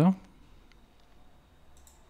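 A few faint, short clicks from a computer being operated, most of them near the end, over quiet room tone. The tail of a spoken word is heard at the very start.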